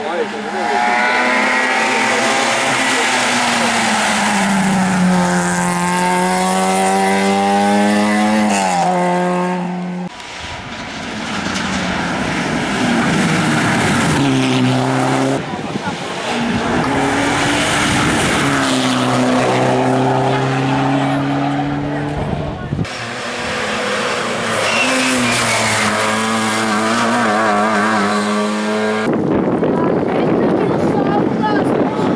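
Hill-climb race car engines driven hard, one car after another: each engine note climbs under acceleration and drops sharply at gear changes or on lifting, and the sound cuts abruptly from one car to the next about every five to ten seconds. The cars include a Zastava Yugo and a Mitsubishi Lancer Evolution rally car.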